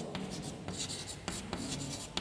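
Chalk writing on a blackboard: a run of short, irregular scratchy strokes and taps as letters are written.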